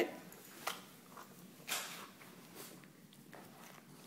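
Faint rustles, soft scuffs and a light click or two from a Cavalier King Charles spaniel moving and mouthing a toy right up against the microphone; a slightly louder scuff comes a little before halfway.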